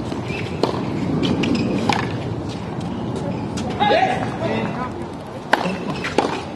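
Tennis ball struck back and forth by rackets in a rally: sharp pops about every one and a half seconds, the loudest near the end, over a background murmur of voices.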